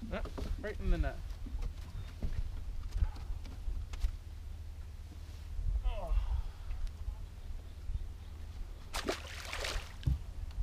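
Steady low rumble of wind on the microphone, with brief muffled voices, and a short splash on the water about nine seconds in.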